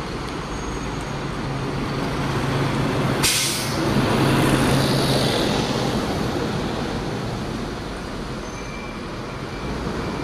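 Single-decker bus's diesel engine running as it approaches and drives close past, growing louder and then fading away. About three seconds in, a short sharp hiss of compressed air from its air brakes.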